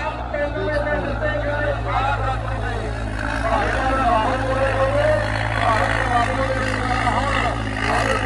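Tractor diesel engine running with a steady low drone while pulling a sled, with many voices talking loudly over it.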